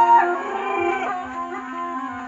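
Tarpa, the gourd-and-bamboo wind instrument of the tarpa dance, playing a reedy melody over a steady drone. A held note ends just after the start, and the playing goes on more softly.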